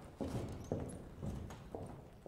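Footsteps of hard-soled shoes walking across a stage floor, about two steps a second, each step a knock with a short low ring.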